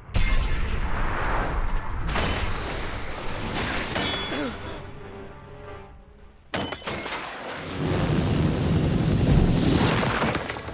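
Dramatic trailer music. A sudden loud hit at the start dies away over about six seconds, then the music re-enters abruptly and swells toward the end.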